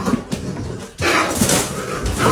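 A cornered raccoon crying out as it is caught, growing suddenly louder about a second in.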